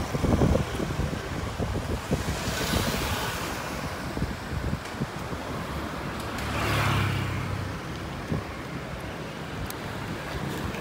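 Street traffic: two vehicles pass close by one after the other, each a swell of tyre and engine noise that builds and fades, the second with a low engine hum. A few low knocks sound right at the start.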